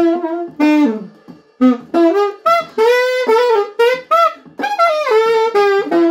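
Solo saxophone playing a slow lament melody in short phrases, with brief pauses for breath between them.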